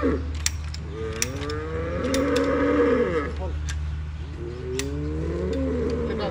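A heifer in labour moos twice in long calls, about two seconds each, as her calf is drawn out with a calf puller. A few sharp clicks come from the puller's ratchet mechanism.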